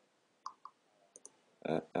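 Four short, light computer-mouse clicks, unevenly spaced, then a brief voiced 'eu' sound near the end, which is the loudest thing.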